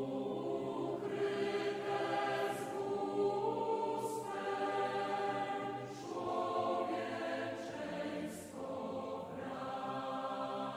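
Voices singing a slow church hymn, with notes held in phrases of about two seconds and short breaks between them.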